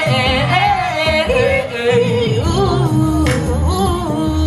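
A woman singing R&B with vibrato on held, sliding notes, amplified through a PA over music with a steady bass.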